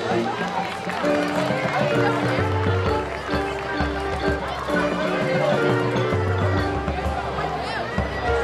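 Marching band playing: sustained brass chords over low bass notes that shift every second or two.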